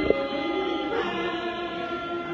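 Lao mor lam singing: a voice holding long, wavering notes over steady sustained tones, with one sharp click just after the start.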